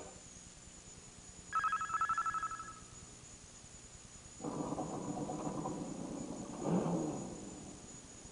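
A telephone bell rings in one short trilling burst of about a second, starting about one and a half seconds in. Later a lower, steady sound with several pitches runs for two or three seconds and swells briefly before fading.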